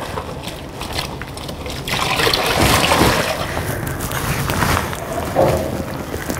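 Water running from a hose into a large plastic bin of foaming FAM 30 disinfectant, with splashing and sloshing as a measuring jug is rinsed in it; the water gets louder about two seconds in.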